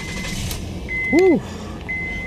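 Car's warning chime beeping about once a second, a single steady high tone, over the engine idling just after start-up.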